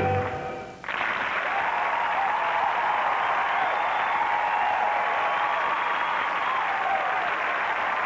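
A live band's final chord rings out and dies away within the first second, then a studio audience breaks into steady applause with cheering voices.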